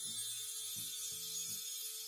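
Quiet background music: a low line of short notes changing about twice a second under a held higher tone and a faint high shimmer.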